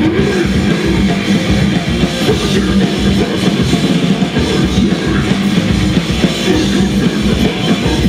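Death metal band playing live: heavily distorted guitars and bass over fast, busy drumming, loud and dense without a break.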